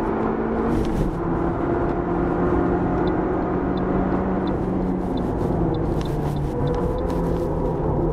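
Toyota Vitz GRMN's supercharged four-cylinder engine pulling at a fairly steady pitch on a circuit lap, with small dips in pitch about a second in and near the end, heard from inside the cabin along with tyre and road noise.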